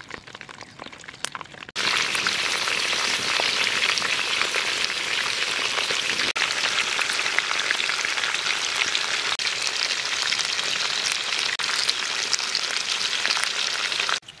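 A few faint crackles from the wood fire, then, about two seconds in, the broth of a softshell turtle stew boiling in a wok, a loud, steady, dense crackling hiss that stops abruptly at the end.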